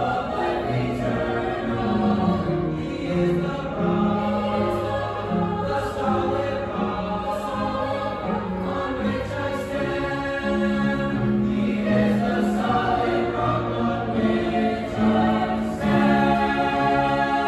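Mixed-voice school choir singing in harmony, holding long chords that shift every second or two.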